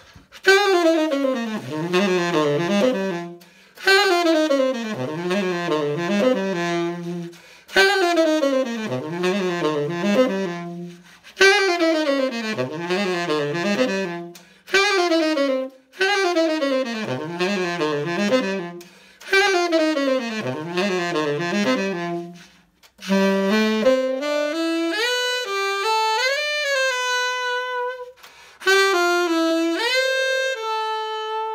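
Tenor saxophone playing the same short descending jazz phrase six times, each about three seconds long with short breaks, then a different phrase that climbs near the end. The takes compare a Ted Klum mouthpiece and a D'Addario Select Jazz mouthpiece on the same horn.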